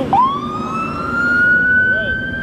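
Emergency vehicle siren wailing, its pitch rising quickly at first and then levelling off in a held high note.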